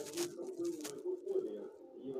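Guinea pig making low, pulsing purring or cooing calls, a few short notes a second.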